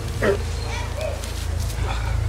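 A short cry falling steeply in pitch about a quarter second in, then a softer brief call near the middle, over a steady low hum.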